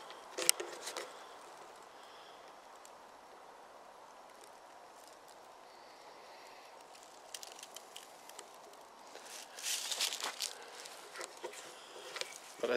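Footsteps crunching through dry fallen leaves on a forest floor: a few steps about half a second in, then a quieter stretch, then steps again from about seven seconds, densest and loudest around nine to eleven seconds.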